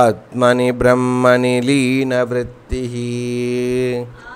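A man chanting a Sanskrit verse in a melodic recitation, the phrases sung on held notes; the last note is held for about a second before the chant stops at the end.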